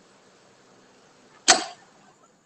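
Faint room hiss, broken about one and a half seconds in by one sharp knock that dies away quickly.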